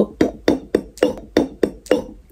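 Hands striking together in a quick, even rhythm, about eight claps at roughly four a second, stopping near the end.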